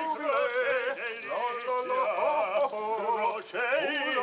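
Music with singing: sustained sung notes with a wavering pitch, changing every second or so.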